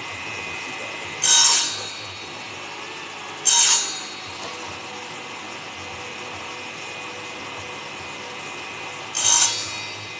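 Table saw running steadily, with three short cuts of about half a second each as small pieces of wood are pushed through the blade: about a second in, about three and a half seconds in, and near the end.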